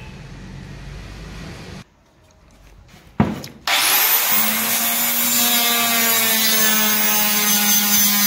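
Handheld electric circular cutter switched on after a sharp knock, its motor whining up to speed about three and a half seconds in and then running steadily as its blade cuts through a WPC louver panel.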